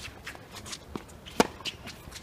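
A tennis ball struck by a racket with one sharp pop a little after halfway through, the loudest sound. Around it are lighter taps and the footsteps and shoe scuffs of players moving on a hard court.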